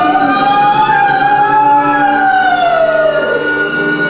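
Free-improvised ensemble music led by one long held note that slides slowly upward, holds, then sinks lower about three seconds in, over a thick layer of other sustained instrument tones.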